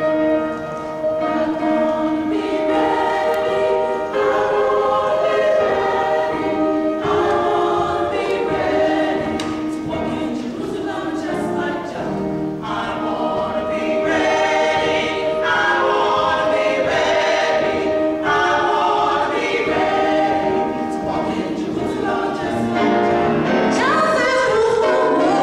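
A small group of singers performing a gospel song together, one singing into a microphone, in phrases of long held notes.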